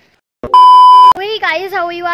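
A loud electronic bleep: one steady pitch held for about half a second, starting about half a second in after a moment of silence. It is the kind of bleep tone dropped in at an edit. A woman starts talking right after it.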